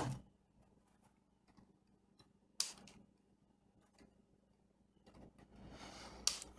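Quiet workbench handling: one sharp click about two and a half seconds in, then soft handling noise from the circuit board and flush cutters building near the end.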